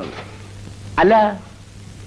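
One short spoken word from a voice about a second in; the rest is the steady hiss and low hum of an old film soundtrack.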